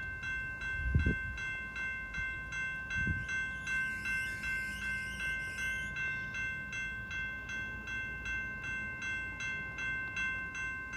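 Railroad grade-crossing warning bell ringing at about two strokes a second as the crossing gate arms come down, the signal of an approaching train. Two low thumps come in the first three seconds.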